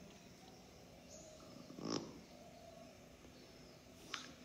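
A quiet pause: faint room tone, with one brief sound about two seconds in.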